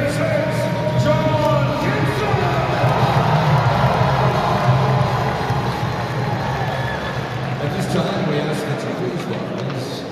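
Arena crowd cheering and shouting over music from the arena's sound system, the noise easing down over the last few seconds.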